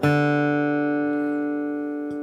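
Acoustic guitar picked once and left to ring, the open D string sounding over a fretted G chord and fading slowly.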